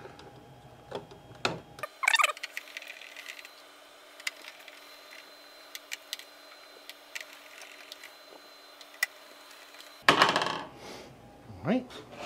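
Small metallic clicks and ticks of a hand screwdriver and screws, as screws are driven into the metal kickstand bracket on the back of an all-in-one computer, with a sharper click about two seconds in and a louder stretch of handling near the end.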